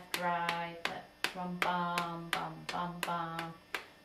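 A woman singing a syncopated short-long-short rhythm (eighth-quarter-eighth) on "bum" at one steady low pitch, while tapping a steady beat with her hands, left and right, about two and a half taps a second.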